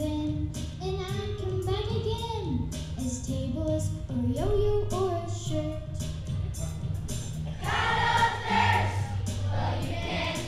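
A children's choir sings a song over an accompaniment. The singing grows louder and fuller about eight seconds in.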